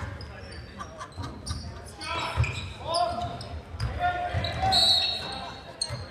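A basketball bouncing on a hardwood gym floor, a run of dull thuds echoing in the large hall, mixed with voices from the players and the crowd.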